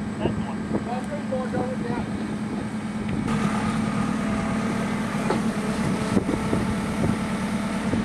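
JCB backhoe loader's diesel engine running steadily, growing louder about three seconds in, with a few short clunks as the bucket works among the rocks.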